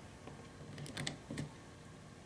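Faint clicks and light knocks of a USB plug being handled and fitted into an Arduino Uno's USB socket, with a small cluster of clicks about a second in.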